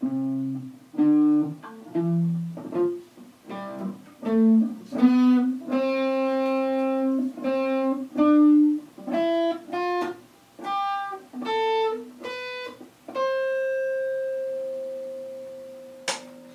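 Electric guitar strung with old, rusted strings, played as a slow line of single picked notes, one held for a couple of seconds midway; the last note is left to ring and slowly fades over the final few seconds.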